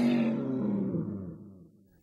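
A deep, drawn-out roar that fades away over about two seconds.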